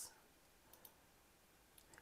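Near silence with faint computer mouse clicks: two close together a little under a second in and one more near the end, as a toolbar menu is opened in the editor.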